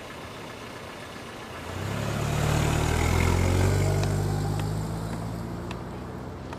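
A car engine pulling away: it grows louder about two seconds in, is loudest a little past the middle, then fades as the taxi drives off.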